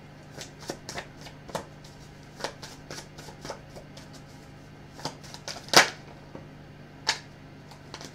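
A deck of tarot cards being shuffled by hand: scattered soft card clicks and flicks, with a louder snap a little past the middle and another about a second later.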